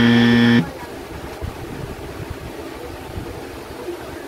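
A loud, flat, buzzing horn tone that stops abruptly just after the start, followed by low background noise.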